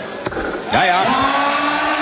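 A dart lands in the board with a single sharp click, then the darts caller bellows a long, drawn-out "one hundred and eighty" over the crowd, announcing a maximum 180 score.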